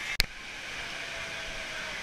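A sharp click about a fifth of a second in, like an edit cut, then the steady rushing hiss of an indoor waterpark's background noise.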